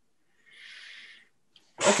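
A person sneezing into a call microphone: a faint breathy intake, then a sudden loud burst near the end.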